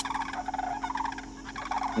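Sandhill cranes calling, several birds giving their rolling, rattling calls, which ease off after about a second and a half.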